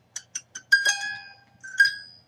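The taut wires of a heart-shaped egg slicer plucked like a harp: a few quick little plucks, then a ringing twang about a second in and another near the end.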